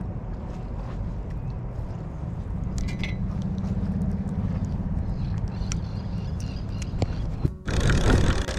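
Steady low outdoor rumble with a few light clicks and ticks from a fishing reel and rod being handled as the baited line is let down. The sound cuts out briefly near the end.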